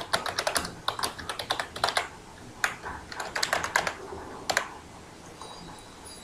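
Typing on a computer keyboard: quick runs of keystrokes that stop about four and a half seconds in.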